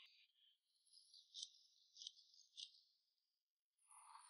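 Near silence, with a faint high-pitched rattle and three soft clicks about half a second apart in the middle.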